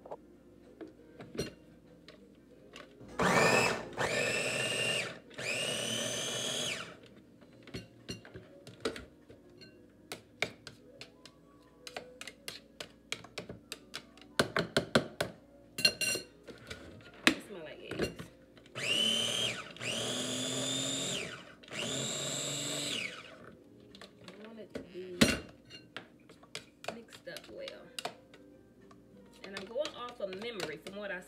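Ninja mini food processor (chopper) pulsed in short motor runs, its whine rising each time it spins up as it chops chickpeas with black salt. There are two groups of about three pulses, the first a few seconds in and the second past the middle. Small plastic clicks and taps fall between them.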